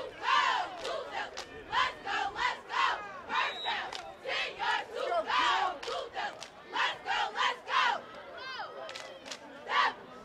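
A group of voices shouting: a rapid string of loud shouts, two to three a second, then a lull about eight seconds in and one last shout near the end.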